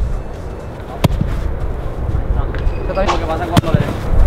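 Wind rumbling on the microphone, with two sharp knocks, one about a second in and one shortly before the end, and faint voices near the end.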